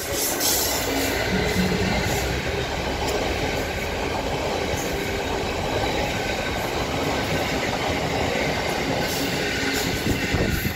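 A freight train hauled by a Class 66 diesel locomotive passes close by. The locomotive's engine goes by in the first couple of seconds, then a string of empty wagons rumbles and clatters steadily over the rails.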